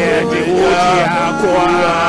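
A man singing through a handheld microphone over sustained instrumental accompaniment, his voice wavering and gliding in pitch.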